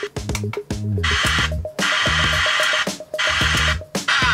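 Music with a steady beat played by a cheap MP5 car stereo's FM radio through a bare test loudspeaker while stations are being tuned. It cuts out briefly twice and changes abruptly about a second in, as the tuner moves between stations.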